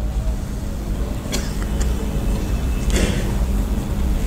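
Steady low rumble of background noise with a faint steady hum, and two short hisses, one about a second in and one near the end, during a pause in the speech.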